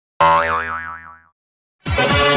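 Cartoon 'boing' sound effect: a sudden twang whose pitch wobbles up and down as it fades out over about a second. After a short gap, loud electronic dance music with a heavy, even beat starts near the end.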